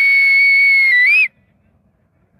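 One long, loud whistle held at a single high pitch, dipping and then rising just before it cuts off a little over a second in.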